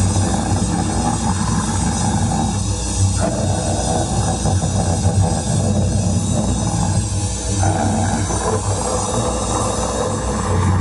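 A loud live punk band playing distorted electric guitar, bass and drums without a break. A vocalist shouts harsh, roaring vocals into the microphone over the music.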